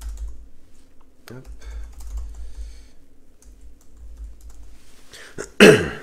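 Light typing taps on a device while a reply to a comment is written, with a brief murmur of voice about a second in. A loud cough near the end.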